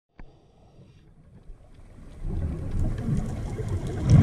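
Muffled underwater rumble of moving water picked up by a camera in a dive housing. It starts faint after a small click and grows louder about two seconds in.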